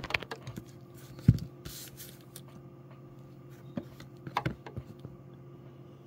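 Scattered handling clicks and knocks, with one sharp click about a second in as the loudest, and a short hiss about two seconds in. Under them runs a faint steady hum, and the clicks die away near the end.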